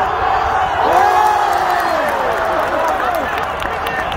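Stadium crowd shouting and cheering, many voices overlapping, with scattered clapping in the second half.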